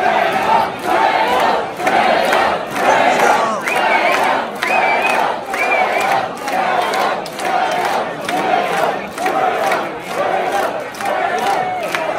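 Concert crowd in a theatre chanting in a steady rhythm, with a few high shrill cries through the middle.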